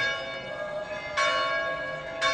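A bell struck twice, a little over a second apart, each stroke ringing on and slowly dying away.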